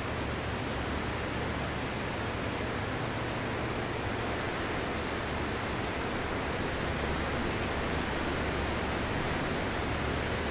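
A steady, even rushing noise with no rise, fall or break.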